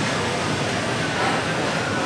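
Steady room noise of a busy indoor food hall, with faint, distant voices in it.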